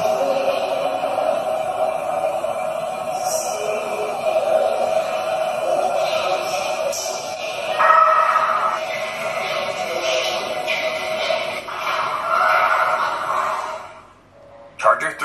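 Enhanced, noisy recording of a faint woman's voice singing ("Sleep...") over a steady hiss and hum, with a louder scream about eight seconds in. Both are presented as unexplained sounds caught on the footage.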